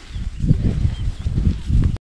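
Horse walking on a grassy trail, its hoof footfalls and tack giving irregular low thuds.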